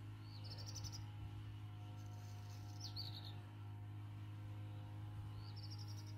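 A small songbird singing a short rising phrase three times, a couple of seconds apart, over a steady low hum.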